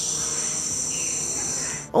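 An insect trilling steadily on one high pitch, which stops abruptly near the end.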